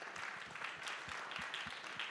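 Audience applauding: a steady patter of many hand claps.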